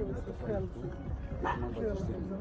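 A two-month-old puppy giving a brief, high yip about one and a half seconds in, over people's voices and background music.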